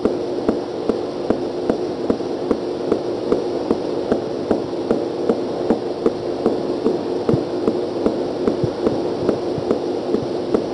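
Marker pen tapping dots onto a whiteboard, short even taps about two to three a second, over a steady hiss and hum from the recording.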